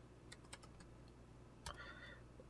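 Faint computer keyboard typing: a handful of soft, scattered keystrokes over near-silent room tone.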